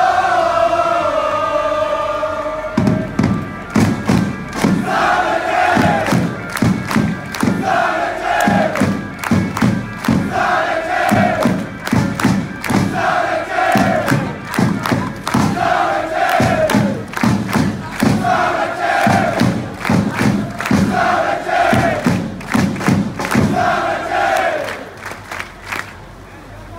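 Crowd of football supporters chanting in unison. A long held note comes first; from about three seconds in, a short chant phrase repeats every two seconds over a steady thudding beat, fading near the end.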